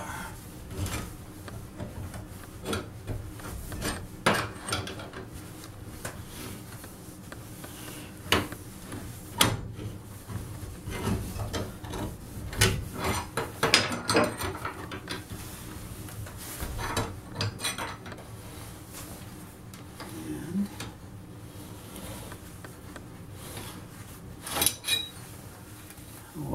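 Steel wrecking bar scraping, rubbing and clinking against an old two-inch metal bathtub drain flange as it is levered around to break the flange loose. The scrapes and knocks come irregularly and are busiest in the middle stretch.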